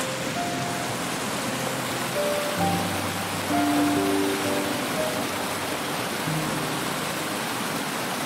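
Steady rush of a small creek tumbling down a rocky cascade, with slow background music of held notes laid over it.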